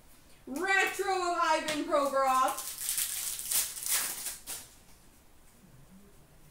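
A wordless, drawn-out vocal sound lasting about two seconds, sliding in pitch. It is followed by about two seconds of rustling and flicking as a stack of trading cards is handled.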